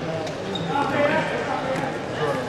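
Indistinct talking in a large sports hall, no clear words, with occasional faint knocks.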